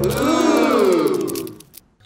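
A pitched sound effect that bends up and then down, then fades out after about a second and a half.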